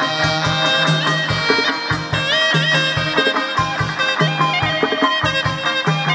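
Chầu văn ritual music from a live ensemble, an instrumental passage: plucked strings over regular drum beats, with a rising pitch bend on the strings about two seconds in.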